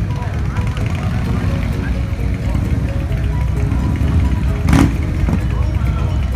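Motorcycle engines idling with a steady low rumble, with one short, loud burst about three quarters of the way through.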